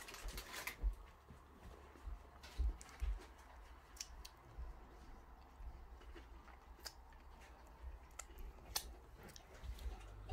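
Faint, scattered small clicks and taps, one every second or so, over a low rumble.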